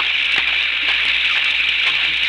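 Steady hiss of a radio-drama rain sound effect, with a few faint clicks on top.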